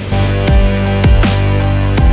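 Electronic background music with a sustained deep bass and a beat of deep, downward-sweeping kick drum hits and sharp high ticks.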